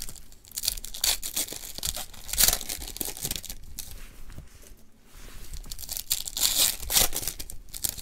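Foil trading-card pack wrapper crinkling and tearing as cards are handled, in several short rustling bursts: about a second in, around two and a half seconds, and again near the six-to-seven-second mark.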